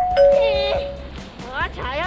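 A two-note 'ding-dong' doorbell-style chime sound effect, a higher note then a lower one, ringing out for about a second, followed by a child's voice.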